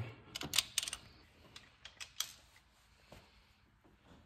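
Metal clicks and clinks of an open-end wrench and screwdriver working a valve-adjuster locknut on a Honda H22 rocker arm as it is snugged down. A cluster of sharp clicks comes in the first second, then only a few faint ticks.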